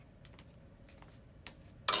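A few light clicks of handling, then a short, loud clatter near the end as a tuning fork is set down on the overbed table.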